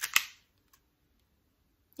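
A single short, sharp click near the start.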